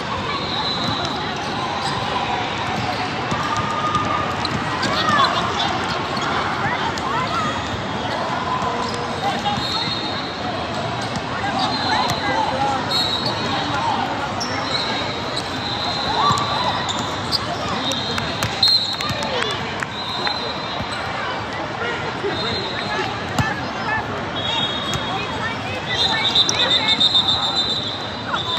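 Basketball game sounds in a large hall: a basketball bouncing on the hardwood court, short high squeaks of sneakers, and steady chatter of spectators and players.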